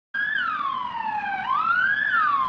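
Ambulance siren wailing. It starts abruptly, falls slowly in pitch, rises again about halfway through and begins to fall once more near the end.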